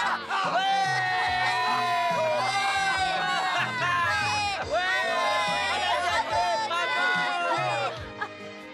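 Several young voices cheering and shouting together in celebration of a goal, over background music.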